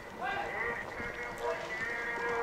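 Faint distant voice under a steady, light hiss of falling rain.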